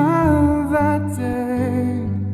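Male voice singing a long wordless note over acoustic guitar, the pitch wavering slightly and stepping down partway through.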